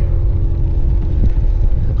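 Wind buffeting the microphone of a camera moving along with a runner, a loud irregular low rumble with a faint steady hum underneath.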